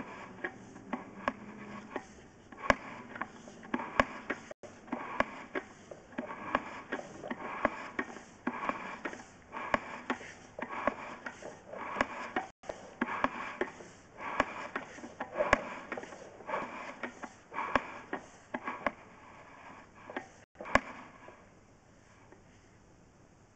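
Drain camera push rod being fed by hand into a 100 mm PVC pipe: a rhythmic scraping with sharp clicks, about one and a half strokes a second, that stops near the end.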